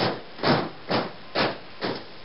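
A steady series of noisy percussive hits, about two a second, each fading quickly, with a dull top end.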